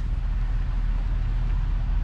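Pickup truck's engine idling, a steady low rumble heard inside the cab.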